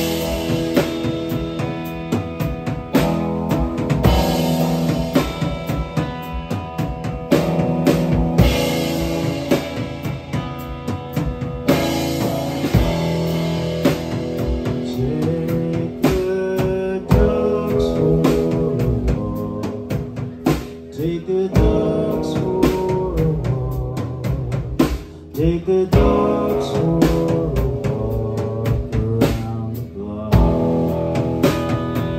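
Live rock band playing: electric guitar over a full drum kit with bass drum, snare and cymbals, loud and continuous.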